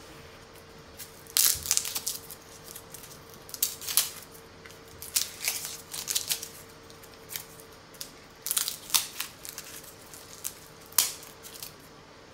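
Dry, papery skin of a garlic bulb crackling as cloves are broken off and peeled by hand, in short bursts every second or two.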